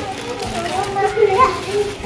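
Children's voices talking and playing in the background.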